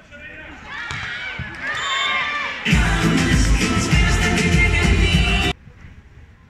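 Short music clip over the stadium's public-address speakers between points. Pitched, voice-like sounds build over the first couple of seconds, then a loud, bass-heavy burst of music runs for about three seconds and cuts off suddenly.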